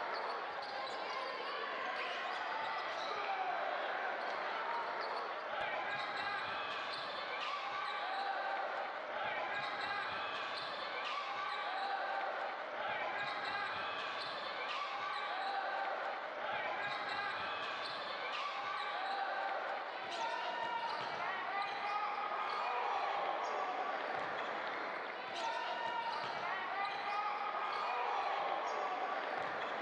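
Game sound from an indoor basketball court: a ball bouncing on the hardwood and short high sneaker squeaks, under a steady wash of players' and spectators' voices.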